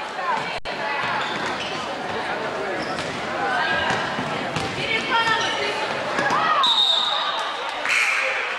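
A basketball dribbled on a hardwood gym floor, short sharp bounces amid voices and shouts from players and spectators, echoing in the large hall.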